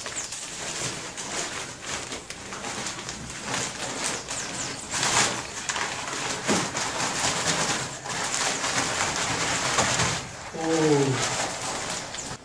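Dry cement powder pouring and sliding out of a paper cement sack onto a heap of sand, with the sack rustling and flapping as it is shaken empty. A brief pitched, voice-like sound comes near the end.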